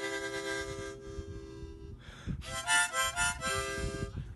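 Harmonica played: a long held chord, a short breath about two seconds in, then a quick run of shifting notes.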